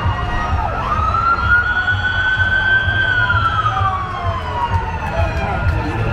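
Ambulance siren giving one slow wail: the pitch rises about a second in, holds, then falls away over the next few seconds, over crowd chatter.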